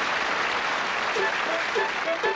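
Studio audience applauding at the end of a song. About halfway through, a band starts a brisk swing tune of short notes under the applause.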